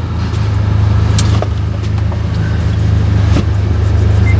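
Car engine idling, a steady low drone heard from inside the cabin, with two short clicks, one about a second in and one near the end.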